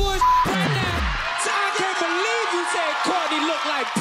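A hip-hop beat cut off by the DJ, its bass sliding down in pitch and stopping about a second in, with a short beep near the start. The beat gives way to a studio audience and cast whooping and shouting over one another.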